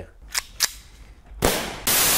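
Two short faint clicks, then a loud burst of TV-static white-noise hiss used as a video transition effect, starting about a second and a half in.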